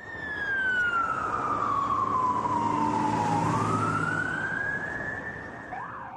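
Emergency vehicle siren on a slow wail: one long tone slides down over about three seconds, then climbs back up, over a steady low vehicle hum. Near the end a faster warbling siren starts.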